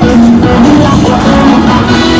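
Slot machine's free-games bonus music playing loudly, a quick melody over a steady beat, as the reels spin.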